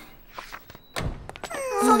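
A dull thunk about a second in, with a few faint clicks around it; a voice starts speaking near the end.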